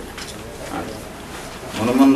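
A short pause in a man's speech with low room noise, then his voice starting again near the end.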